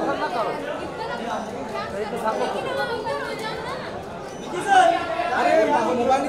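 Crowd chatter: several people talking over one another in a large room, with one voice rising louder about five seconds in.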